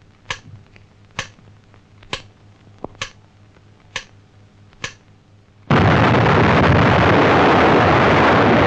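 Sharp single ticks about once a second mark a countdown to detonation. Nearly six seconds in, the blast of an atomic bomb explosion comes in suddenly and holds loud and steady.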